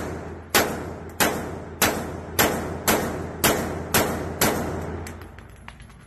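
Handgun fired rapidly at an indoor shooting range, about eight shots roughly every half second, each ringing off the range walls. The string stops about four and a half seconds in.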